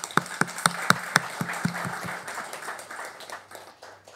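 A small audience clapping. It begins with a few loud, sharp claps, then spreads into a patter of applause that fades out near the end.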